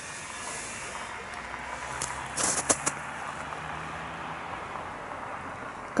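Footsteps crunching on snow, a short run of steps about two seconds in, over a steady outdoor hiss with a faint low hum in the middle.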